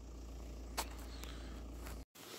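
Quiet outdoor background with a steady low rumble and one faint click just under a second in.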